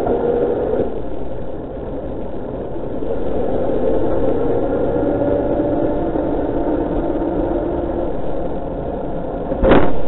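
A steady droning hum with a few slowly drifting tones, from a velomobile rolling on the road with a car's engine close behind it. A sharp knock just before the end is the loudest sound.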